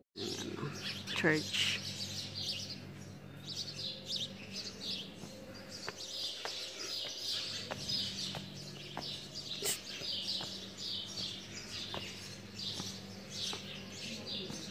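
Small birds chirping over and over, many short high chirps overlapping, with faint clicks of footsteps on stone steps.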